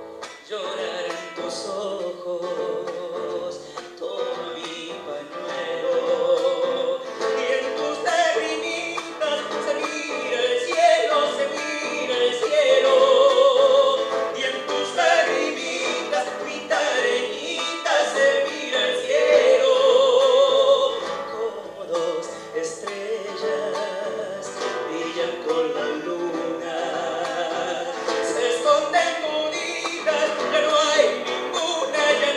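A man singing long held notes with a wide vibrato, accompanied by a nylon-string acoustic guitar.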